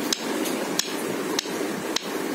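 A run of sharp, evenly spaced taps, about one every two-thirds of a second, four in all, over a steady background hum.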